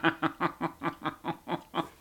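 A man laughing: a run of quick, even chuckles, about six a second, stopping near the end.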